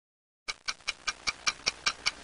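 Rapid, clock-like ticking sound effect: even, sharp ticks about five a second, starting about half a second in after silence.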